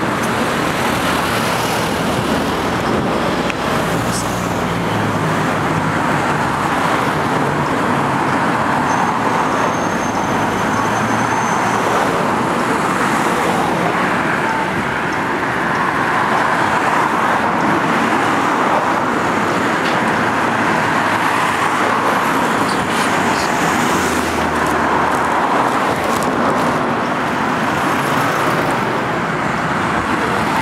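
Steady road traffic noise from passing cars on a city street.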